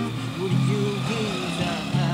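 A man singing a gliding melody, accompanied by his own acoustic guitar.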